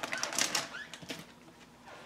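Clear plastic bag crinkling and rustling as it is handled, a quick run of crackly rustles over the first second that then dies away.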